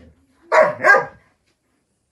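A dog barks twice in quick succession, about half a second in.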